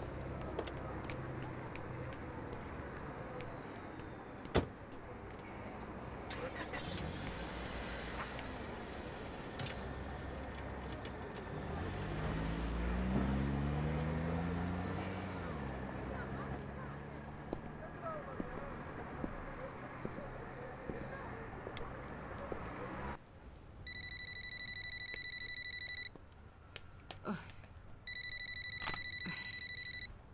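A small van's engine running and revving up, then easing off as it drives away down the street. After that a telephone rings twice, each ring a steady electronic tone of about two seconds.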